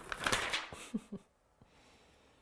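Brief crinkling rustle of a flexible clear photopolymer stamp being handled, lasting under a second at the start.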